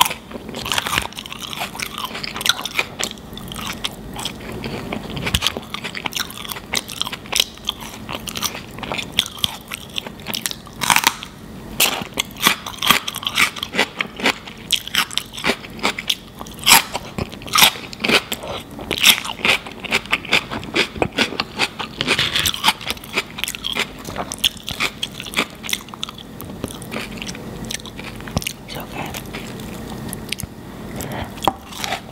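Close-miked eating: wet chewing with many sharp, crisp crunches as a celery stick and fries dipped in cheese sauce are bitten and chewed.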